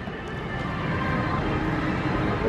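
Indoor shopping-mall ambience: a steady background hubbub with music playing over it.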